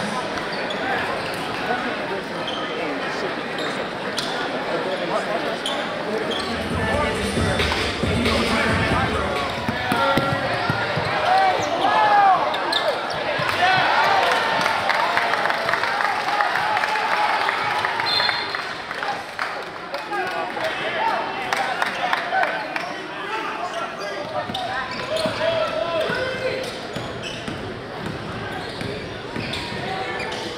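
Basketball game sound in a gym: a crowd talking and shouting while a basketball is dribbled and bounces on the hardwood court. The crowd gets louder for a few seconds around the middle.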